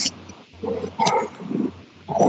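A few muffled, distorted syllables of a person's voice with a low hum underneath, heard through an online-meeting connection.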